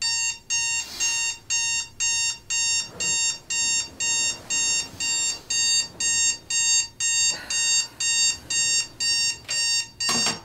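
Digital bedside alarm clock going off: a shrill electronic beep repeating about twice a second, starting suddenly out of a quiet room.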